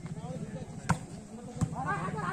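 A volleyball struck by hand twice during a rally: a sharp smack about a second in and another about two-thirds of a second later, over spectators' chatter.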